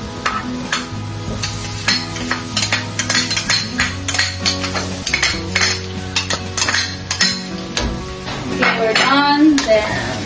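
A spoon clinks and scrapes against a plastic container and an aluminium wok as chopped onion and garlic are tipped in. Near the end a spatula stirs the pan with a light sizzle. Irregular taps and clicks run over steady background music.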